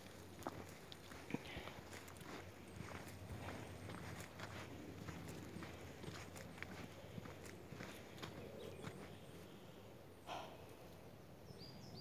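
Faint footsteps along a woodland dirt path scattered with leaf litter, with light crackles of leaves and twigs underfoot.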